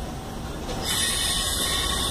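CPTM Série 1100 electric multiple unit, built by Budd and Mafersa, pulling out and approaching to pass close by: a steady low rumble of the train on the rails, joined a little under a second in by a loud high-pitched hiss as it draws level.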